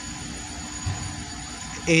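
A steady low background hum with faint even tones running through it, and no clear event.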